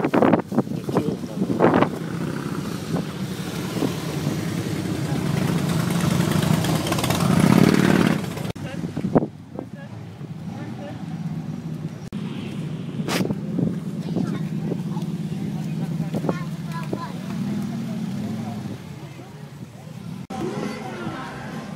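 Supercharged hot-rod engine with Holley carburettors running with a steady low note. The sound swells over several seconds and drops off sharply about eight seconds in, then settles back to a steady level. A single sharp click comes about thirteen seconds in.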